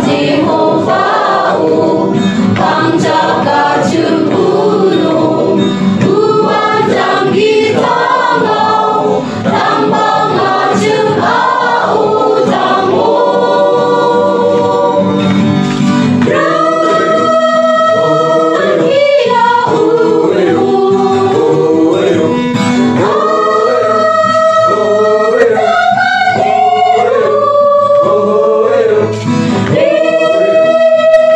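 A choir singing a Christian gospel song over instrumental backing. From about halfway, the voices hold long, steady notes.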